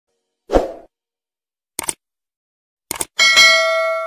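Subscribe-button animation sound effects: a soft thump, a single click, a quick double click, then a bright bell ding that rings on and fades over about a second and a half.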